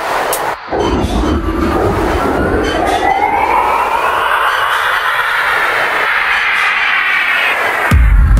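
Dark techno breakdown: the kick and bass drop out and a noisy sweep with a rising, gliding tone builds for several seconds. Near the end the heavy kick and bass crash back in.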